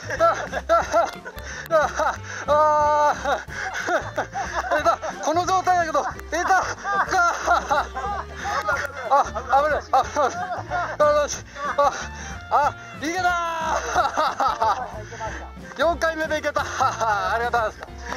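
Background music: a song with a sung vocal line over a repeating bass, running throughout.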